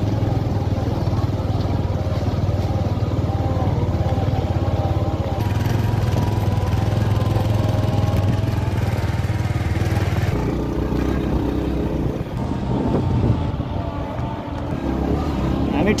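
Motorcycle engine running steadily under way on a dirt road, with people's voices over it. The engine note drops about ten seconds in.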